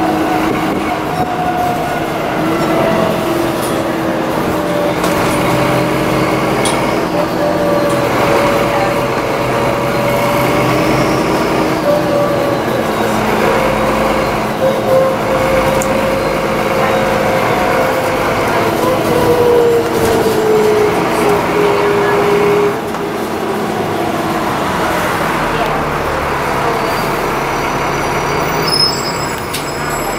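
Alexander Dennis Enviro400 double-decker bus heard from inside the lower deck while under way: engine and transmission running with a steady rumble and a whine that slowly falls in pitch. The sound eases off a little about three-quarters of the way through.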